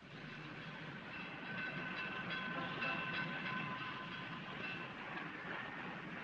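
City street traffic noise that starts abruptly: a steady rumble with thin, high whining tones running through the middle.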